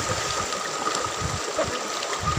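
Shallow river running over rocks, a steady, even rush of water.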